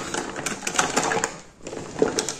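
Small cosmetics containers clicking and clattering together as they are rummaged through and handled, in a string of irregular sharp taps with a short lull near the end.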